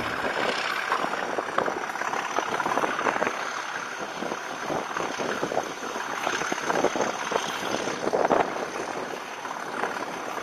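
A moving train heard from a camera held out of a carriage window: wind rushing over the microphone with dense, irregular rattling and clatter.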